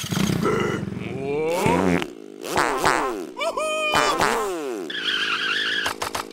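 Cartoon caterpillar voices making wordless noises: a low raspy buzzing for about the first two seconds, then a run of squeaky cries that slide up and down in pitch.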